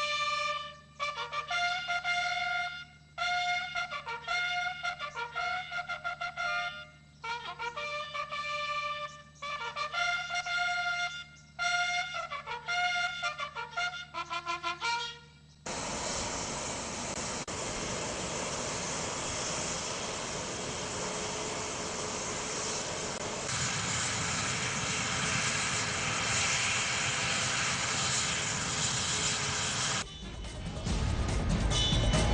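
A military trumpet call played in phrases of short, clear notes with brief pauses, some phrases stepping downward. About halfway through it cuts off abruptly and a helicopter's engine and rotor run with a steady, dense noise.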